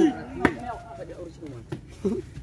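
A hand striking a plastic volleyball once with a sharp smack about half a second in, amid the players' shouts.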